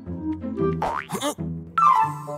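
Cartoon background score, light and playful, with comic sound effects over it: a rising glide that turns into a wobbling, bouncing tone about a second in, then a sharp falling glide near the end.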